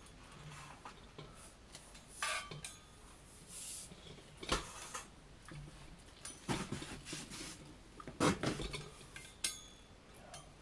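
Handling noise close to the microphone: scattered knocks, rubs and light clinks as objects are moved about, the loudest a few seconds apart near the middle and end.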